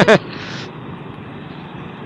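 Steady rush of engine, road and wind noise from a motor scooter riding slowly in traffic, with a brief hiss just after the start.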